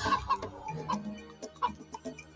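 Cartoon sound effect of a chicken clucking: a few short, separate clucks.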